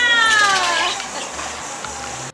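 A small dog whining: one long, high-pitched whine that falls slowly in pitch and fades out about a second in.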